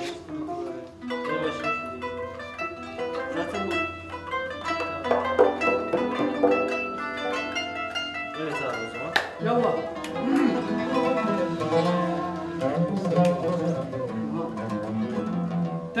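A small Turkish ensemble playing a melody together: a kanun plucked with finger picks in quick runs of notes, with a long-necked tanbur and another plucked lute.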